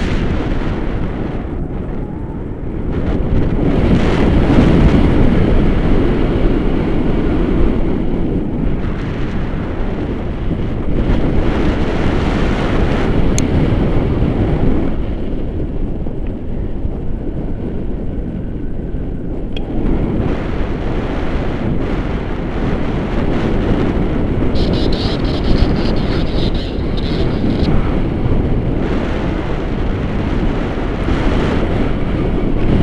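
Wind buffeting an action camera's microphone in flight under a tandem paraglider: a loud, continuous low rush of air that swells and eases, loudest a few seconds in.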